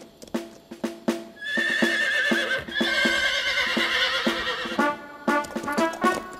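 Horse hooves clip-clopping in a steady rhythm, with a horse whinnying about a second and a half in, over background music. Brass notes come in near the end.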